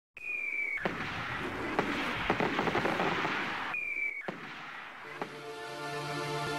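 Fireworks: a short whistle falling slightly in pitch, then a bang and a long stretch of crackling. A second whistle and bang follow about four seconds in.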